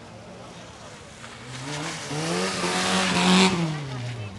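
Rally car engine approaching hard, its note rising in pitch and loudness, then dropping as it goes past, with a rush of noise at the loudest point about three and a half seconds in.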